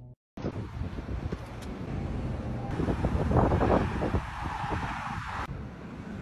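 Wind noise on the phone's microphone with road traffic, louder through the middle.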